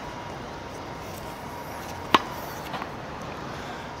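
A tennis racket strikes a ball once on a serve, a single sharp crack about two seconds in, over a steady low background hiss.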